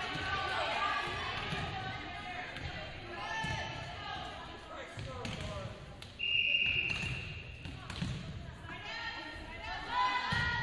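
Volleyball referee's whistle: one steady blast a little over a second long, about six seconds in. Indistinct voices and scattered thuds on the hardwood gym floor run underneath.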